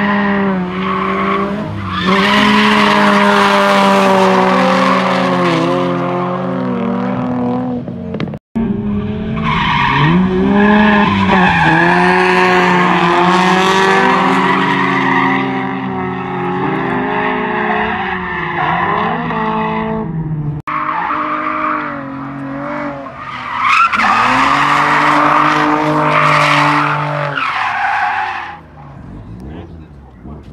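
A drifting car sliding through a corner, its engine revving hard and rising and falling with the throttle while the tyres squeal. It comes in three passes split by sudden cuts, about eight and a half and twenty seconds in, and dies down near the end.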